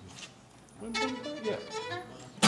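A few short, quiet fiddle notes starting about a second in, the fiddle being sounded just before the band is counted into a song.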